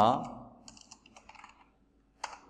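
Computer keyboard typing: a short run of quick, faint keystrokes.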